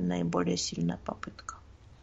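A voice speaking in the first second and trailing off, followed by a few faint, short clicks over quiet room tone.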